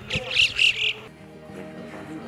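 A few loud, high chirping calls in the first second, then background music with steady held tones starts.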